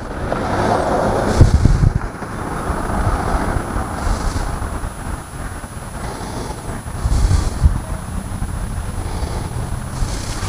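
Outdoor noise of wind buffeting the microphone in gusts, the strongest about one and a half seconds in and again about seven seconds in, over a steady rumble of passing road traffic.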